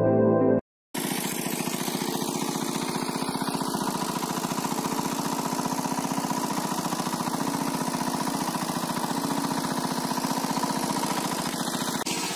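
A small engine running steadily at an even, rapid beat, typical of a pump engine draining a pond.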